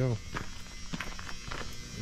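A steady low electrical hum with a few faint clicks scattered through it, after a man's voice at the very start.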